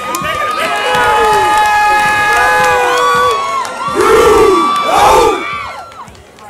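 Crowd screaming and cheering, many voices holding long high shouts over one another, with two loud yells close by about four and five seconds in.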